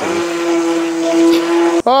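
Immersion blender motor running steadily in a pot of cheese sauce with a single-pitched whine, then switching off near the end.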